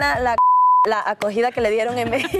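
A censor bleep: one steady pure tone, about half a second long, sounds a little under half a second in while all other sound drops out, masking a word. A woman's Spanish speech runs on either side of it.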